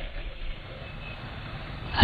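Faint, steady background noise in a pause between a man's spoken sentences, with no distinct event in it.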